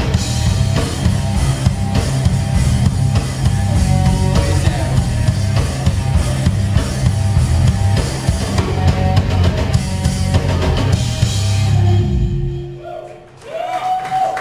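Live rock/metal band playing electric guitars and a drum kit, with no singing. The song stops about twelve seconds in, leaving a short held note as it dies away.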